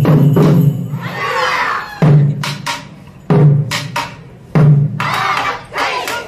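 Taiko drums playing: a dense run of strokes, then three heavy single strokes about a second and a half apart, with sharp wooden clapper clicks between them.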